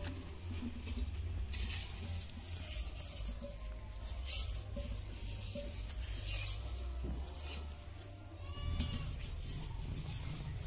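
A hand rubbing and scraping over a mud-smeared clay cooking pot, in repeated scratchy bursts, then going quiet; a short animal call comes near the end.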